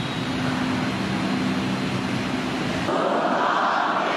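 Many voices begin singing together about three seconds in, a choir or congregation starting a hymn with the sound blurred by the church's echo. Before that there is a steady low hum.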